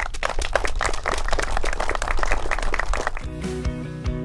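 Audience applauding, a dense patter of clapping, then guitar music starting about three seconds in.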